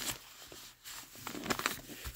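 Faint rustling and scuffing of a burlap tote bag as hands smooth it flat on a table, a few scattered strokes that grow slightly louder near the end.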